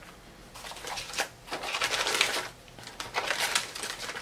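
Crinkly tea packaging rustled and crumpled by hand in three short bursts as tea packets are taken out of the box.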